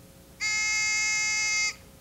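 Game show buzzer: one steady electronic buzz lasting just over a second, starting about half a second in and cutting off sharply. It marks a contestant ringing in to answer.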